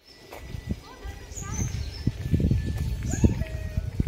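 Small birds chirping in short, repeated rising and falling calls, over a low rumble that grows louder from about a second in.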